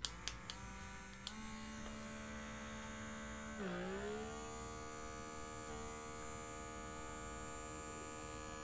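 Handheld blackhead vacuum (electric pore suction device) running with a steady electric hum, after a few clicks at the start. Its pitch dips briefly about three and a half seconds in, as the motor takes load from the nozzle sucking against the skin, then holds steady.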